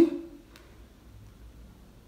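Quiet room tone with a faint low hum, after a spoken word trails off at the very start; one faint tick about half a second in.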